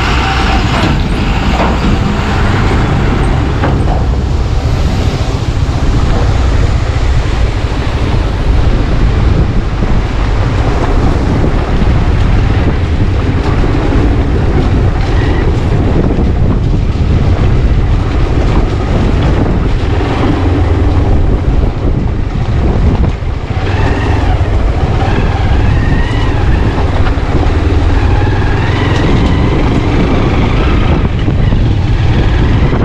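Motorcycle engine running steadily as the bike rides over a rough gravel and rock track. A dump truck passes close by at the start.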